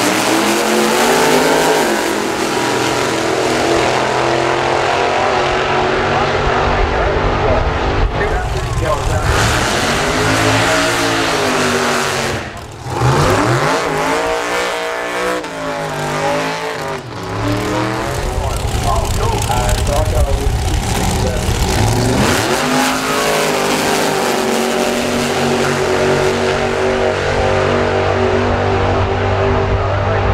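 Supercharged drag racing engines running loudly at the start line, revved in repeated rising and falling blips through the middle, then at full throttle as two cars race down the strip near the end.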